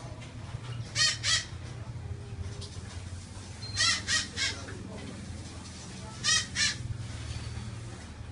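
A parrot squawking in short, harsh calls: a pair about a second in, three in quick succession around four seconds, and another pair past six seconds.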